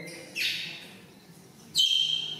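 Baby macaque giving high-pitched squeals: a short falling one about a third of a second in, then a louder, sharper one held on one pitch near the end.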